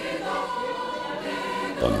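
Background music of sustained choral voices holding steady chords.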